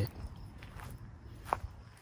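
Footsteps on dry dirt and scattered straw, with one sharper click about one and a half seconds in.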